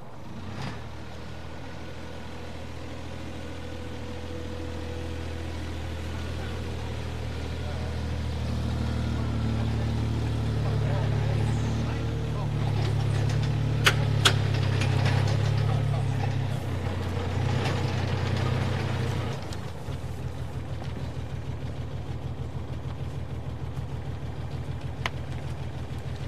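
Small site dumper's diesel engine running and growing louder as the soil-laden machine drives up, with two sharp clicks about 14 seconds in. About 20 seconds in it drops to a steady, evenly pulsing idle.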